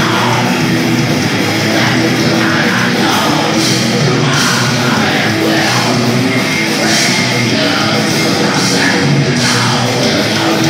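Heavy metal band playing live: distorted electric guitars, bass guitar and drums, loud and dense throughout, with a vocalist singing into a microphone.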